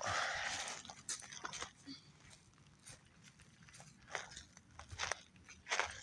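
Dry pine needles and twigs rustling and crunching underfoot: a burst of rustling in the first second, then scattered light crunches and clicks of footsteps.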